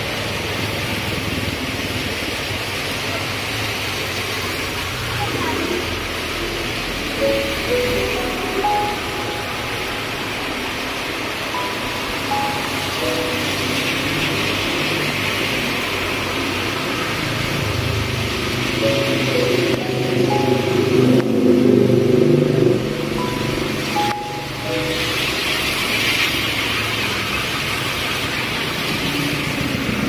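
Heavy rain hissing steadily on a paved road, with vehicles driving through the wet street, louder for a few seconds past the middle. Background music with a melody plays over it.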